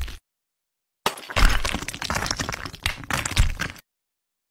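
Sound effect of a wall cracking and breaking apart: after a brief silence, a run of sharp crackling breaks starts about a second in, with louder bursts near the start and again near the end, then stops suddenly.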